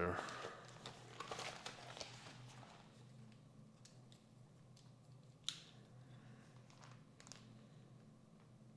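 Paper pages of a notebook rustling as they are leafed through for the first couple of seconds, then faint pen-on-paper writing over a low steady hum, with one sharp click about five and a half seconds in.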